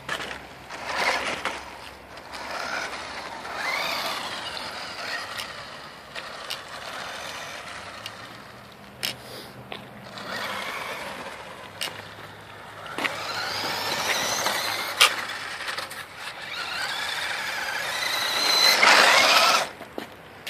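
Toy-grade RC buggy's small electric motor whining in several bursts as it is driven on asphalt, the pitch climbing as it speeds up and dropping as it slows, with tyre noise on the pavement. The loudest run comes near the end, when the car passes close by.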